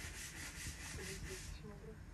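Faint rapid rubbing, about six strokes a second, that stops about a second and a half in.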